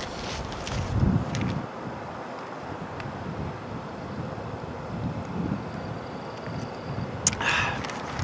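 Outdoor background ambience: a steady hiss with wind buffeting the microphone and a low rumble underneath. A short sharp noise comes near the end.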